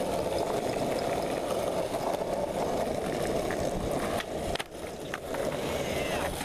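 Skateboard wheels rolling over rough asphalt with a steady grinding rumble. It dips briefly about four and a half seconds in, with a few sharp clacks.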